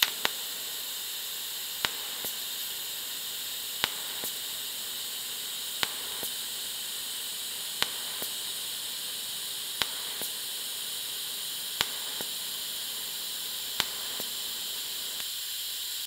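TIG welding arc on thin stainless steel with the machine set to a very slow pulse: a steady high hiss with a sharp tick about every two seconds, each followed by a fainter tick, as the current steps between the high pulse and the low base current.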